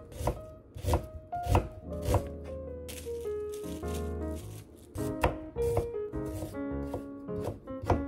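Kitchen knife chopping onion on a plastic cutting board in quick strokes, stopping about two seconds in; a brief crinkle of plastic wrap being pulled off a carrot follows, and from about five seconds in the knife slices the carrot against the board. Background music plays throughout.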